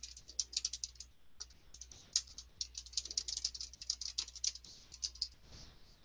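Fast typing on a computer keyboard: quick runs of keystrokes with a short pause about a second in and another near the end.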